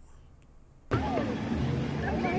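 Quiet for just under a second, then beach sound cuts in abruptly: small waves washing onto the sand and a steady rumble of wind on the microphone, with the distant voices of people in the water.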